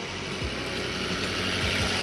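Pickup truck towing a fifth-wheel travel trailer driving along a street: steady engine and road noise that grows slightly louder as it approaches.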